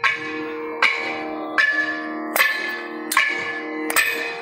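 Percussion in a thavil solo: slow, evenly spaced ringing strokes, about one every 0.8 seconds, each ringing on until the next. They come after a run of fast drum strokes.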